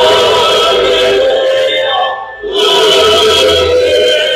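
Choir singing loudly in full harmony, with a short break in the sound about two seconds in before the voices come back in.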